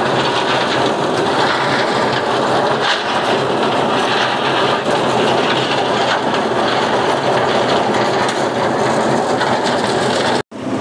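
Drum-type concrete mixer running steadily, its engine and turning drum churning a concrete mix with a constant rattle.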